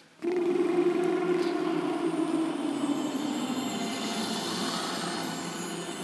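A hall full of male singers doing a lip trill (lip bubble) in unison, a buzzing drone that starts on a held F and slides slowly down in pitch toward the octave below.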